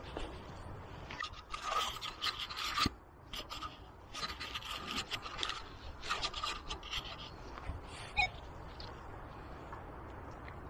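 Hand digging tool scraping and rasping through soil and dry leaf litter in irregular bursts of short strokes with brief pauses.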